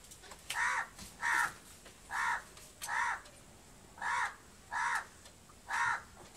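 A crow cawing seven times in short, evenly spaced caws, some falling in pairs.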